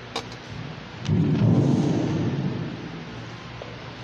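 A light clink of metal altar vessels being handled, then a sudden low rumble that lasts about a second and a half and fades out.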